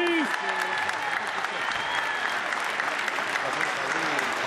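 A large audience applauding: dense, steady clapping from many hands.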